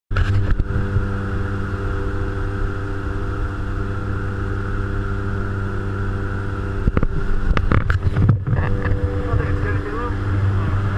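Steady drone of a skydiving jump plane's engines heard from inside the cabin. Knocks and rustling of gear against the camera come about seven to eight and a half seconds in.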